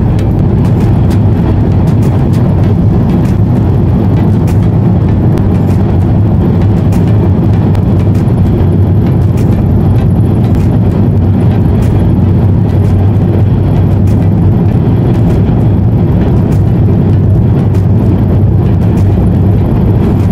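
Steady low rumble of tyre, road and engine noise heard from inside a car driving at motorway speed.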